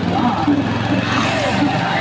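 Voices calling out over the steady hum of a vehicle engine on the move.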